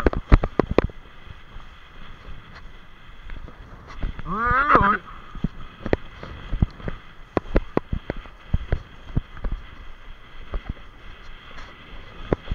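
Choppy sea water splashing and slapping against a camera held at the water's surface, with many sharp irregular knocks over a steady hiss. A man laughs briefly about four seconds in.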